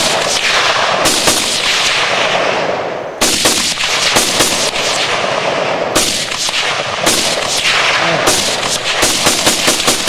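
A string of rifle shots, some single and some in quick runs of several shots, the tightest run near the end. Each crack is followed by a long rolling echo.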